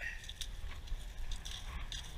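Wind rumbling on the microphone on a very windy day, with a few faint short rustles and clicks.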